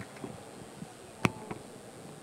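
Background hubbub of an audience getting up and moving about in a large hall, with a sharp knock about a second in and a fainter one just after.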